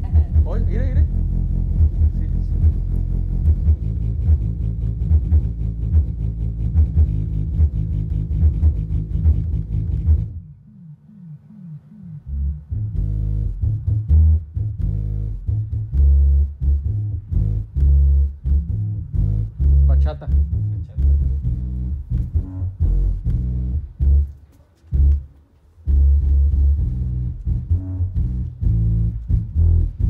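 Mexican regional music played loud through a DJ rig's bass and mid speaker cabinets with no tweeters connected, so it comes out heavy in the bass and dull, with almost no treble. The music drops out and a new passage starts about ten seconds in, and there is another short drop a few seconds before the end.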